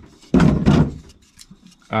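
Faint clicks and light knocks of 3D-printed plastic parts being picked up and handled, between short bits of a man's voice that end in a drawn-out 'um'.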